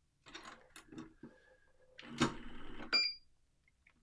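Powered screwdriver set to 5 inch-pounds running a fastener down into a joint simulator: a few small handling clicks, then the motor runs for about a second. It stops with a click as the tool reaches its set torque, followed by a short high beep.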